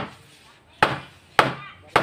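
Hammer blows on the wooden frame of a solid-wood panel door: sharp knocks about every half second, each dying away quickly.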